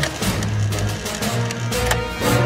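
Television news ident theme music with sustained bass notes, punctuated by sharp hits at the start and again near the end.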